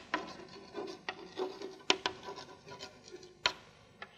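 Chalk writing on a blackboard: short scratchy strokes broken by sharp taps of the chalk against the board, the loudest taps about two and three and a half seconds in.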